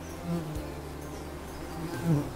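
Bees buzzing: a steady low drone that swells briefly about a third of a second in, as a bee flies close.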